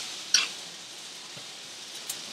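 Garlic and onion sizzling steadily in a little oil in a frying pan, with one sharp click about a third of a second in.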